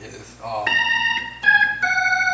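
Hammond organ playing sustained gospel preaching chords: a chord sounds from about half a second in, then changes twice in quick succession, near the middle and again shortly after.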